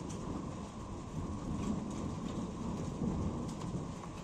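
Steady rain falling through a thunderstorm, with a low rumble of thunder.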